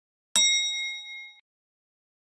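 Notification-bell chime sound effect as the on-screen bell icon is clicked: one bright ding struck about a third of a second in, ringing for about a second before it cuts off.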